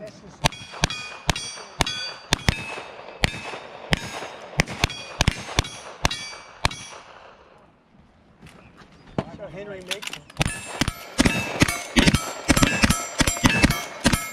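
Revolver shots at a steady pace, each followed by the ringing clang of a hit steel target. After a pause of a couple of seconds, a faster run of rifle shots sets the steel targets ringing again.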